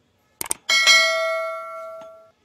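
Subscribe-button notification sound effect: a quick double mouse click, then a bell ding that rings on with several tones and fades away over about a second and a half.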